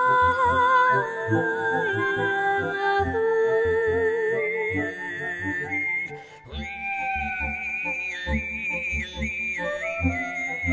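Music: Mongolian throat singing, a high whistling overtone melody held over a low drone, with a low pulsing beat beneath. The sound dips briefly just past the middle, and the whistle line comes back higher.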